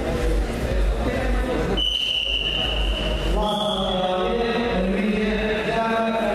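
Hall hubbub over a low hum, then a steady high-pitched tone lasting about a second and a half. After it, a man's amplified voice calls out in long, drawn-out phrases, in the manner of an announcer calling wrestlers onto the mat.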